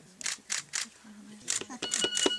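Women's voices in quiet talk, with short brushing noises; near the end a steady, high electronic beep tone sets in and holds.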